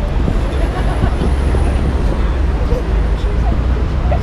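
Steady low rumble of street traffic, with a faint murmur of voices from people standing close by.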